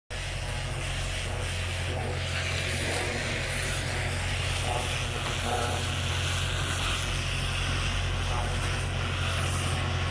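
Farm tractor's diesel engine running steadily: a low, even hum that holds one pitch throughout.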